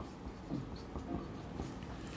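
Marker pen writing on a whiteboard: a few faint scratching strokes.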